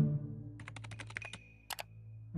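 Keyboard typing sound effect: a quick run of about a dozen key clicks, then two sharper clicks like a mouse click on a search button near the end, over soft background music.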